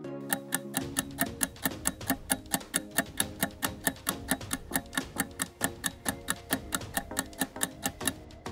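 Countdown timer ticking about four times a second over a quiet music bed with held notes: the eight-second answer clock of a quiz running down.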